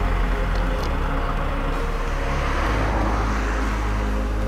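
Mercedes-Benz GLA SUV driving past on a wet highway: steady tyre and road noise over a strong low rumble.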